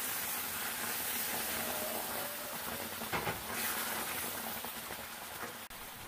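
Green tomatillo salsa sizzling and steaming as it hits a hot stainless steel skillet of toasted corn tortilla pieces: a steady hiss that slowly fades. There is a short clatter about three seconds in.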